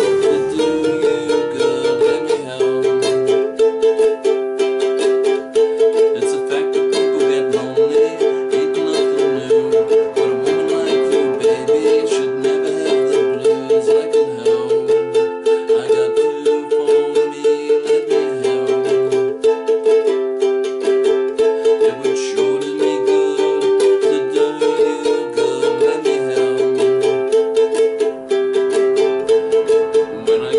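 Ukulele strummed in a steady, perky rhythm, moving through a simple chord progression with the chords changing every second or two.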